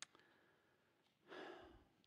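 Near silence with a brief click at the start. About a second and a half in comes a man's short in-breath close to the microphone, taken before speaking again.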